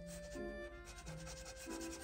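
Tweezer tip rubbing quickly back and forth over a paper lip sticker on paper, a rapid run of short scratchy strokes, pressing the sticker down.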